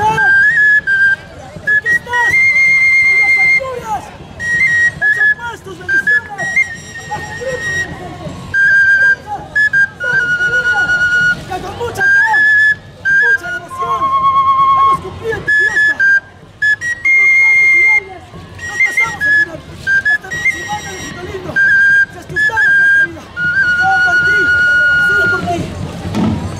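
High, piping notes from a wind instrument, each held steady for up to a second or so and stepping between a few pitches with short breaks between them. Voices can be heard underneath.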